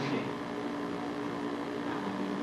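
A steady low hum with a few constant tones, running under a pause in the dialogue; the end of a spoken word is heard at the very start.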